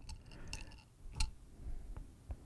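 Faint handling sounds of a metal regulator filter bowl and element: light rustling and small clicks, with one sharper click about a second in.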